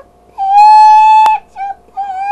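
A woman's singing voice holding one long, loud high note for about a second, followed by a few short notes.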